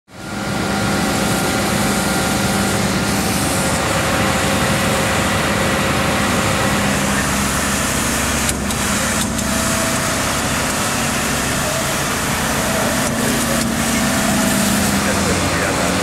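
A fire truck's diesel engine running steadily: a dense, constant noise with a steady hum underneath, broken by two short clicks a little past the middle.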